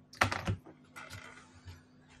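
Clicks of a computer keyboard being typed on close to the microphone, a quick loud cluster near the start followed by a few lighter taps.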